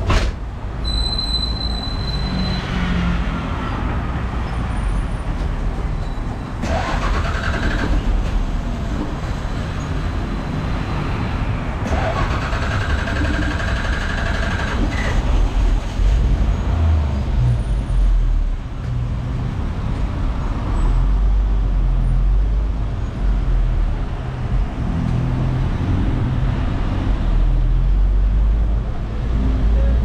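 Engine of an old Bangkok city bus, heard from inside the passenger cabin: a steady low rumble as the bus sets off and drives, with its whine rising twice as it gets under way. A brief high tone sounds about a second in.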